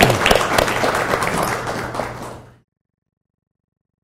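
Audience applauding, many overlapping claps, fading and then cutting off abruptly about two and a half seconds in.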